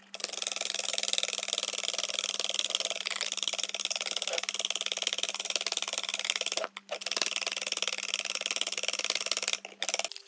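Wire whisk beaten fast by hand in a plastic mixing bowl: a quick, continuous rattling clatter of the wires against the bowl. It breaks off briefly about two-thirds of the way through and again just before the end.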